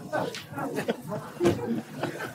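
An audience laughing and murmuring together, many voices overlapping.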